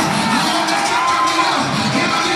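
Church congregation cheering and shouting in praise over loud music, many voices overlapping.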